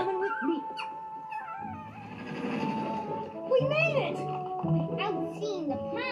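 Cartoon soundtrack playing from a television: background music with short squeaks and vocal sounds from animated animal characters.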